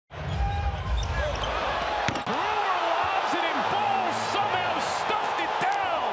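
Live NBA game audio: steady arena crowd noise, a basketball being dribbled on the hardwood, and sneakers squeaking on the court in many short chirps that rise and fall in pitch. There are a couple of sharp knocks about two seconds in.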